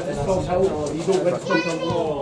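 Players and spectators at a football match shouting and calling over one another during a goalmouth scramble, with one high-pitched shout near the end.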